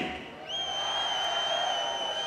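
A concert crowd answering the singer with faint cheering, over which one long, steady, high-pitched whistle starts about half a second in and holds for about a second and a half.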